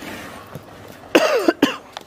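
Three loud coughs in quick succession, a little over a second in.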